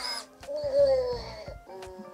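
Eilik desktop robot's cartoon-like electronic voice: one short wavering tone that slides downward as the robot wakes after its boot screen.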